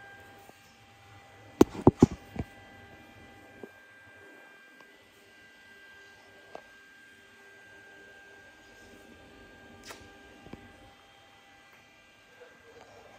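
A steady electrical hum with a faint high whine, broken about two seconds in by a quick run of four or five sharp knocks, then a few lighter clicks later on.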